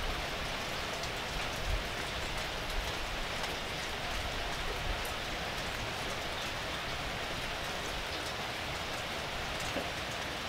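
Steady light rain falling, with a few faint clicks.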